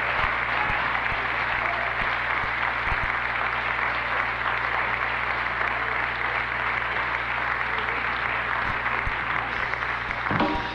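Live concert audience applauding steadily, with a low steady hum underneath.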